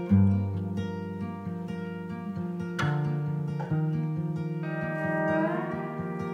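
Instrumental passage of a slow song led by guitar: sustained chords ring out, changing about three seconds in and again shortly after, with a short upward slide near the end.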